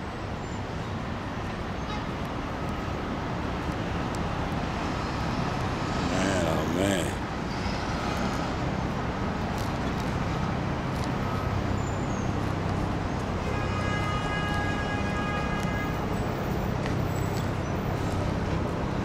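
Steady city traffic noise with a low hum underneath. A brief wavering tone comes and goes about six seconds in, and a steady high tone sounds for a few seconds near the end.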